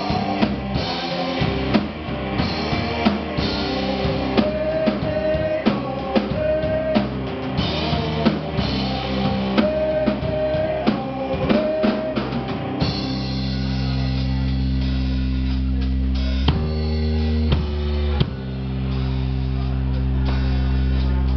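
Rock band playing live: drum kit, bass and electric guitars keeping a steady beat under a lead melody. About 13 seconds in, the drums drop back and the band holds long, bass-heavy chords.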